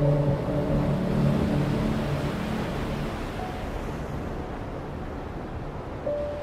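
Stormy sea surf as a steady rushing noise in a storm ambience, under a few held low music notes that fade out about two seconds in; the noise then slowly grows quieter.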